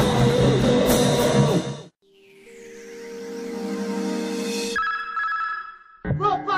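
Noisecore punk band, with distorted guitar and drums, playing fast and loud, cutting off abruptly about two seconds in. A steady droning chord then swells up and fades away, with a few higher ringing tones near the end.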